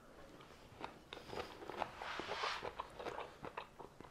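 A man chewing a mouthful of Korean-style cabbage salad with carrot: faint, crisp crunching that starts about a second in.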